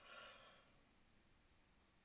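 A woman's soft exhale, a faint sigh, in the first half-second, then near silence: room tone.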